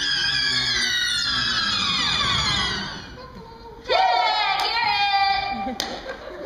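Stage actor's exaggerated vocal cry sliding down in pitch over about three seconds. After a short pause, a loud, high, held cry of about two seconds, with a sharp click near the end.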